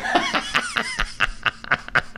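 Laughter in quick, short bursts.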